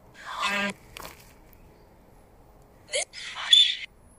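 Spirit box (a radio scanning through stations): short bursts of hiss and a brief voice-like fragment, with a click about a second in and a hissy burst carrying a thin whistle near the end.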